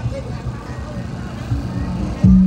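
Portable inverter generator running with a steady low hum, with faint voices above it.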